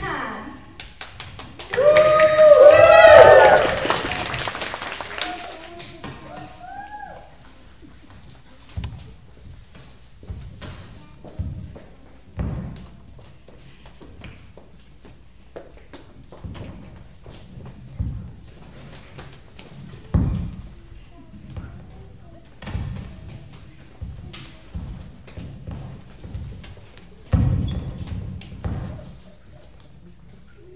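Scattered thumps and knocks of footsteps and movement on a hollow stage platform, about one every second or two, coming after a loud burst of sound with a wavering pitch about a second in.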